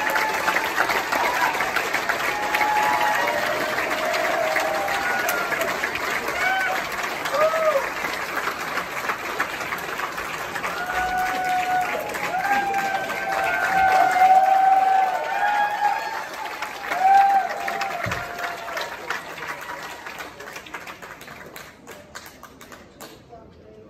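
Audience in a theatre applauding, with voices calling out and cheering over the clapping. The applause dies down over the last few seconds.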